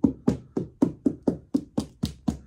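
A gloved hand knocks rapidly and evenly on a cured fibreglass body shell, about four hollow knocks a second, testing how solid the cured resin and glass layup is.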